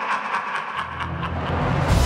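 Orchestral film-trailer music. A fast repeating pulse fades out while a deep rumble comes in under it and swells, then a loud full-orchestra hit lands near the end, just as the title card appears.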